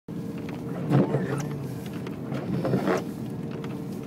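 Steady low drone of a vehicle cabin while driving on a snowy road, with two brief louder sounds about one second in and near three seconds.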